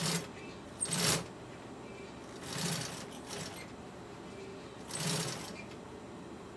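Industrial sewing machine top-stitching a seam in black vinyl in short spurts: four brief runs of stitching, each under half a second.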